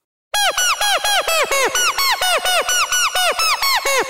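Software synthesizer playing a randomly generated MIDI riff in E major pentatonic, steady eighth notes at about four a second, starting about a third of a second in. Each note bends up and back down in pitch.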